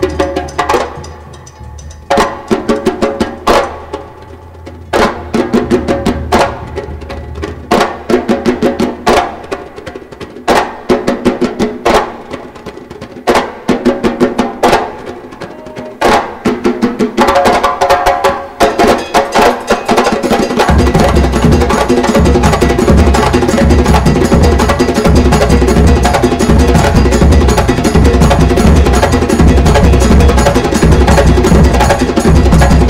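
Conga solo: hand strikes on the congas in short, fast phrases with brief pauses between them. About twenty seconds in the whole percussion ensemble comes in, with deep drums underneath, playing a dense, steady, louder rhythm.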